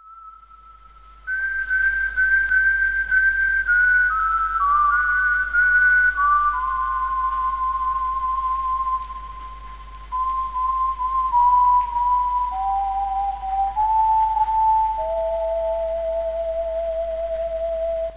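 A slow whistled melody, one clear note at a time, stepping downward from high to low over about seventeen seconds, over a steady low hum.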